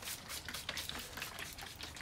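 Hand trigger spray bottle spritzing water in a quick run of short squirts.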